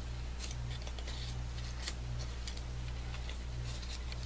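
Layered paper flower petals bent open by hand, giving faint, scattered paper rustles and crackles over a steady low hum.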